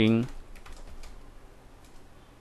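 Faint computer keyboard typing, a run of soft key clicks as text is entered.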